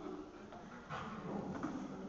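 A dog whining, louder from about a second in.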